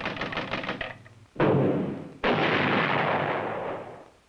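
Cartoon sound effects: a fast rattling run of even pulses stops about a second in, then two sudden loud bangs follow under a second apart, the second one fading away slowly.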